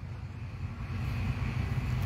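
A low, steady rumble that slowly grows louder.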